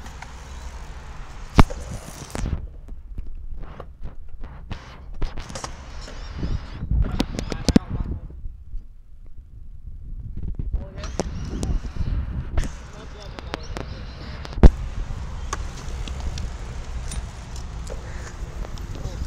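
Kick scooter and skateboard wheels rolling over a concrete skatepark with a low rumble, broken by sharp clacks of decks and wheels striking the surface. The loudest clack comes about three-quarters of the way in, and there is a short lull about halfway.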